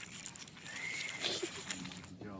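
Steady road noise inside a moving car's cabin, with a brief high-pitched vocal squeal, rising then falling, a little under a second in, followed by a few soft clicks and knocks.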